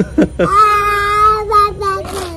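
A toddler's voice: a couple of short rising squeals, then one long, high-pitched, held "aaah" of about a second and a half.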